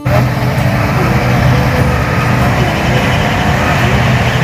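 Combine harvester's diesel engine and machinery running steadily while harvesting rice: a loud, even mechanical noise with a strong low hum.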